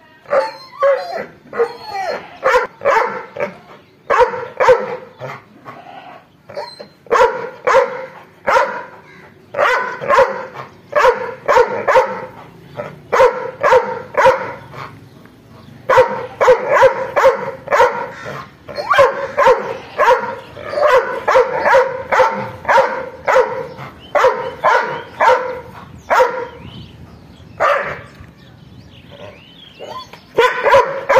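A tethered dog barking angrily in quick runs of several barks, with short pauses between the runs and only an odd bark in the last few seconds.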